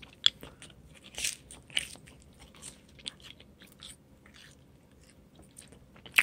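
Someone chewing food close to the microphone: faint, irregular crunches and mouth clicks that die away over the last second or so.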